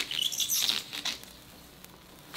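Protective plastic film being peeled off a tempered glass PC side panel, a crackling rustle for about a second that then dies away.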